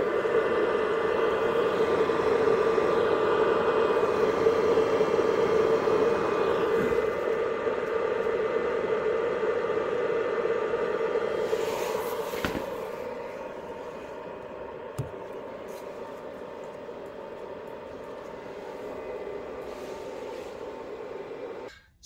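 Bluetti AC200MAX's external grid charger running while charging the power station, a steady hum that is incredibly loud. It drops to a lower level a little past halfway, with a brief click around then.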